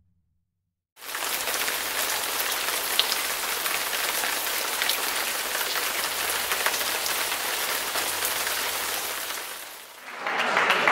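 A steady, rain-like hiss with scattered small crackles. It starts suddenly about a second in after silence and fades out near the end.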